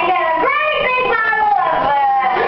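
A high-pitched voice in long, sliding sing-song phrases, running on without a break.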